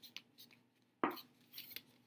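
A paper plate being folded over and creased by hand: a few light crinkles, then a sharper crackle from the fold about a second in.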